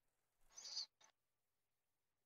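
Near silence, with one faint short hiss about half a second in.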